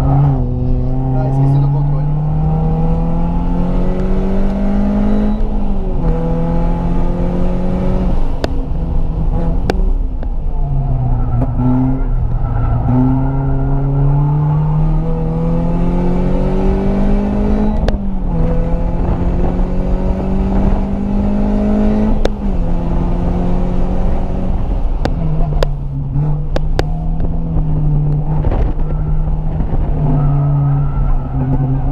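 Renault Sandero RS's 2.0-litre four-cylinder engine heard from inside the cabin, pulling hard under full throttle. Its pitch climbs steadily through the revs and drops sharply at each gear change, about four or five times.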